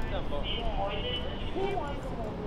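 Indistinct voices of people talking, with no clear words, over a steady low street rumble.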